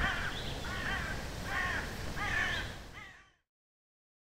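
Crows cawing, several harsh calls in a row over a low background rumble, fading out about three seconds in.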